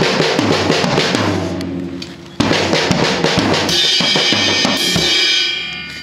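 Acoustic drum kit played in a fast fill: rapid stick strokes on the snare and toms with bass drum and cymbal crashes. Near the end a cymbal rings out and fades.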